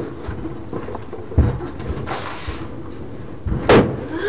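Household belongings being packed up: a few knocks and thumps against wooden furniture, the loudest near the end, with a stretch of rustling in between.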